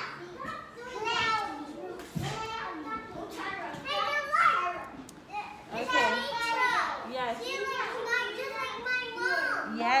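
Young children's high-pitched voices talking and calling out over one another, answering a teacher's question.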